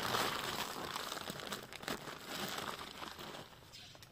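Plastic crinkling and rustling as a red plastic scoop digs humus out of its bag, loudest at first and fading.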